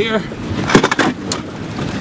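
A handful of sharp knocks and clatter, the loudest about three quarters of a second in, as a small bass landing net is grabbed and handled in the boat.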